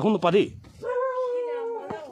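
A dog howling once: a steady, high-pitched held note of about a second that sags at the end.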